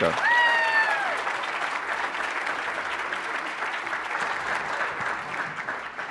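Audience applause at the end of a speech, steady at first and fading out near the end.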